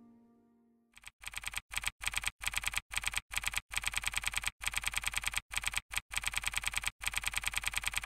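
Typing sound effect: rapid key clicks at about eight a second, in short runs broken by brief pauses, as a caption is typed onto the screen. The last of the background music fades out just before the typing begins.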